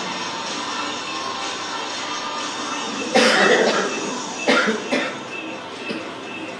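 A person coughing: one longer cough about three seconds in, then two short coughs a second and a half later.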